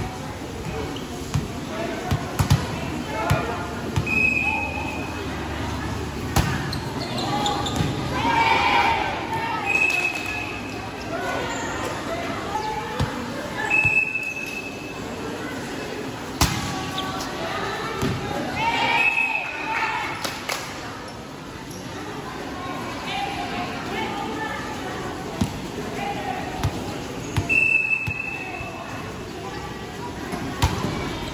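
Volleyball being struck in an indoor gym: sharp slaps of serves and passes, with shouting voices of players and spectators. Four short whistle blasts, the referee's signal to serve.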